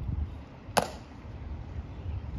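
One sharp crack a little under a second in, from a Tomb sentinel's rifle drill: a hand slapping the rifle as it is brought to a new position. Wind rumbles low on the microphone throughout.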